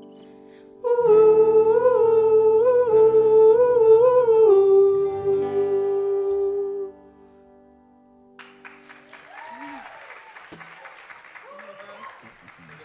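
Closing notes of a live acoustic folk song: a wordless sung line, held and wavering in pitch, over sustained guitar chords, fading out about seven seconds in. Audience applause follows near the end, quieter than the singing.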